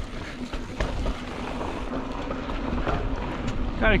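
Polygon Siskiu T7 mountain bike rolling quickly over rutted dirt singletrack: tyre noise on the dirt with a few light rattles from the bike, over a steady low rumble.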